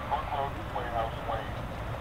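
Faint, thin radio voice transmission, cut off in the highs, over a steady low rumble of static. These are the air-to-ground call-outs of the Apollo 11 lunar descent.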